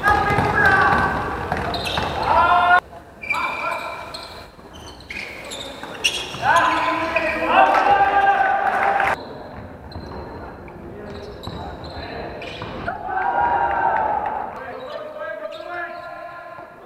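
Indoor basketball game audio: players' shouts and calls with a basketball bouncing on the court. The sound cuts off abruptly twice, about three and nine seconds in.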